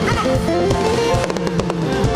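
Live worship-band music in a pause between sung lines: held chords over a bass line, with a quick run of sharp hits in the second half.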